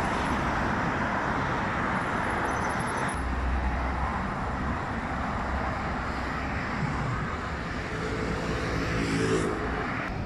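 Dense traffic on a multi-lane highway: a steady rush of tyres and engines from passing cars and buses. The low rumble deepens about three seconds in, and a pitched vehicle hum stands out near the end.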